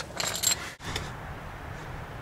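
A brief light metallic jingle, then a steady background hiss.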